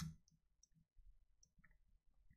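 One sharp click right at the start, from working a computer, followed by a few faint ticks. Otherwise near silence.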